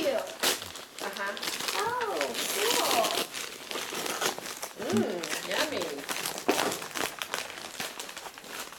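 Wrapping paper crinkling and rustling as wrapped Christmas presents are handled and unwrapped.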